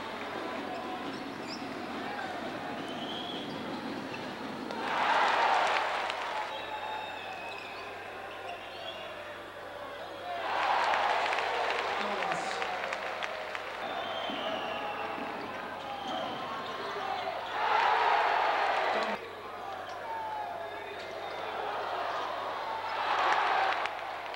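Basketball arena crowd murmuring steadily and swelling into cheers four times, each lasting one to two seconds.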